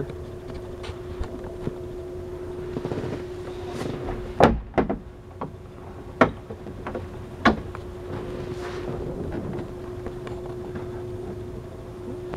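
Fiberglass console storage-compartment door on a boat being swung shut with a couple of sharp knocks, then its twist latch turned by hand with further short clicks. A steady low hum sits underneath.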